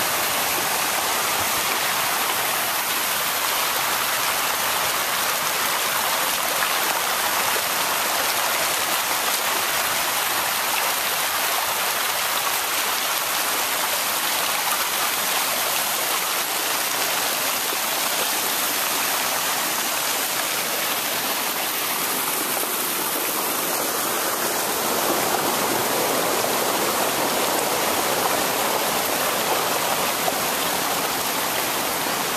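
Muddy floodwater rushing down a stony track, a steady loud rush of churning water.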